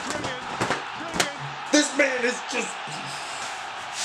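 A man's excited wordless exclamations over music, with one sharp knock about a second in.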